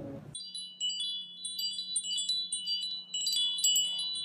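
Outro sound effect of tinkling wind-chime notes: many short, high ringing notes overlapping, coming in abruptly about a third of a second in as the music cuts off, over a faint steady low hum.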